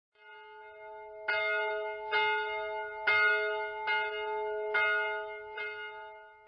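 A church bell tolling as a death knell. The ringing starts at once, and from about a second in the bell is struck again roughly once a second, each stroke ringing on into the next.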